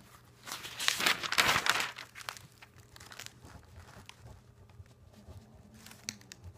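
Paper rustling and scratching on a spiral sketchbook as it is handled and drawn on with a pen: one loud rustle about a second in, then softer, scattered scratches.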